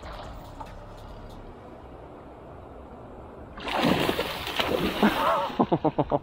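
A hooked tarpon leaping and crashing back into the sea beside a small boat: after a few seconds of low water noise, a sudden loud splash about three and a half seconds in lasts around two seconds, with a few sharp splashes near the end.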